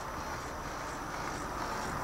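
Small electric motor and gears of a battery-operated 3D solar system model running steadily as its planet arms revolve.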